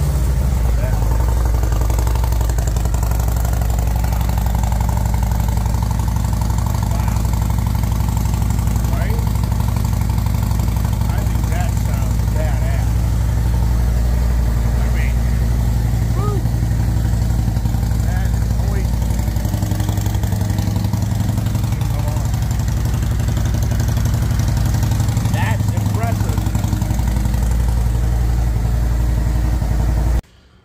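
Harley-Davidson 121 cubic-inch V-twin idling steadily through Rinehart slip-on mufflers with a deep, even rumble, extremely loud for slip-on mufflers.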